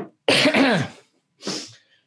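A man coughing to clear his throat: one loud cough about a quarter second in, then a shorter one about a second and a half in.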